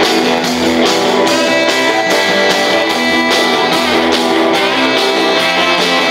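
Live rock band playing an instrumental passage: electric guitars and bass over a steady drum beat.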